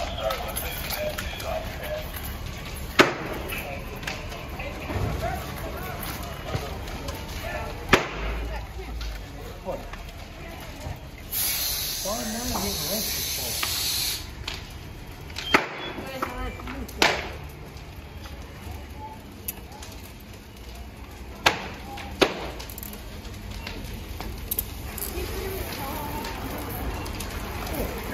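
Noise of a working apartment fire: a steady low rumble with about half a dozen sharp cracks spread through it, and a burst of hissing spray lasting about three seconds near the middle.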